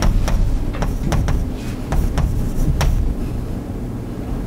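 Chalk writing on a blackboard: about a dozen short, irregular taps and scrapes as letters are formed, over a steady low rumble.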